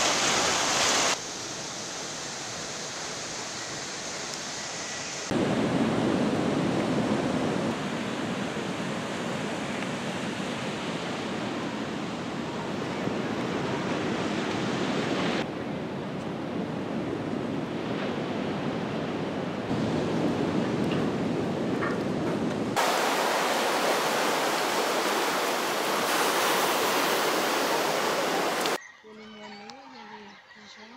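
Steady rushing noise of moving water and wind. It changes abruptly in level and tone several times.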